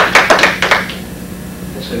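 A small audience applauding, the claps dying away about a second in.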